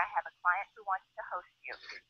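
A caller talking over a telephone line, the voice thin and narrow-sounding.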